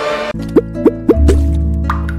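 Dramatic underscore cuts off abruptly and gives way to a playful cartoon logo jingle: four quick rising water-drop bloops, then a bass note entering and another rising bloop near the end.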